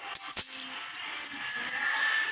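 Close-up eating sounds of fried instant noodles being slurped and chewed, with two sharp clicks in the first half-second, the second the louder.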